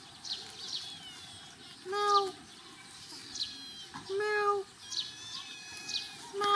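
A kitten mewing twice: a short, even-pitched mew about two seconds in and another a little after four seconds. Small birds chirp between the mews.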